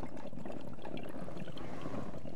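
Glass water pipe bubbling steadily as a hit is drawn through it.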